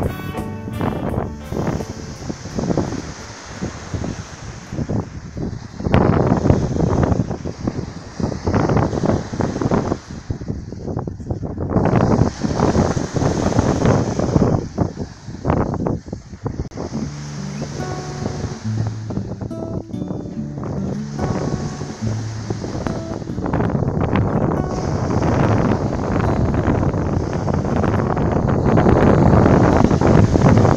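Wind buffeting the microphone in gusts, swelling and dropping every few seconds, with music faintly underneath; a few steady low notes stand out about halfway through.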